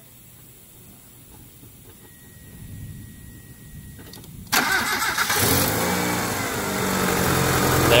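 Mitsubishi 4G63 DOHC 16-valve four-cylinder engine, its timing belt exposed, starting up. After a few quiet seconds it cranks briefly about four and a half seconds in, fires straight up and settles into a steady idle. Catching at once on the freshly fitted timing belt is the sign that the cam timing is set right.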